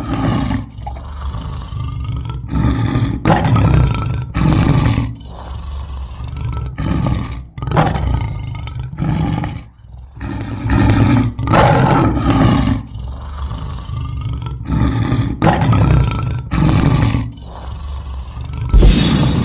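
Lion-like roars, one after another, each about a second long with short breaks between.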